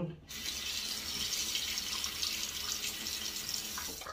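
Bathroom tap running steadily into the sink, starting about a third of a second in and shutting off just before the end.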